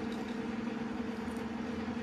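Steady low hum: room tone with a constant drone holding one pitch and its overtone, and no distinct events.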